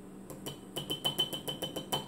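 A small metal measuring spoon tapped rapidly against the rim of a storage canister, about seven or eight light clicks a second with a thin metallic ring, knocking powder out of the spoon.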